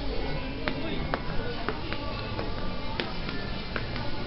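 Background music and a murmur of people talking in a busy shop, with about seven sharp, brief clicks or clinks scattered through it, the loudest about three seconds in.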